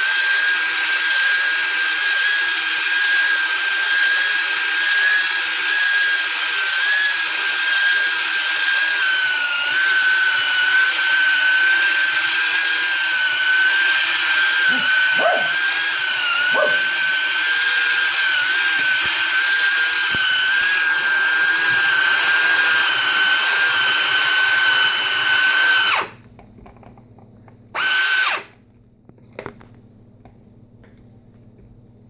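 Made By Me toy pottery wheel's small electric motor running under foot-pedal control, a steady high whine that wavers slightly in pitch. Near the end it cuts off suddenly, then runs again for a moment.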